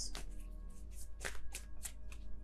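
Tarot cards being shuffled by hand: about six short, sharp card snaps spread over two seconds, over soft background music.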